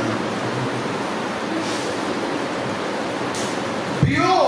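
A steady, fairly loud hiss of background noise with no clear pattern, filling the pause in speech.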